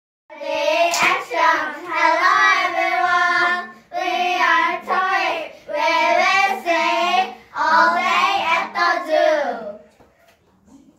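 A small group of children singing together, the song falling into four phrases with short breaths between them and ending just before the close. A single sharp click is heard about a second in.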